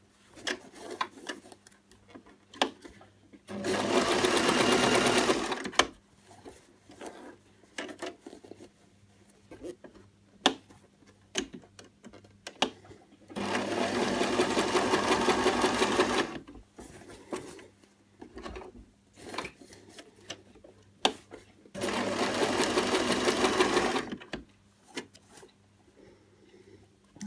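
Domestic sewing machine stitching waffle-shirring lines across earlier rows of shirring, in three steady runs of about two to three seconds each. Scattered light clicks come between the runs.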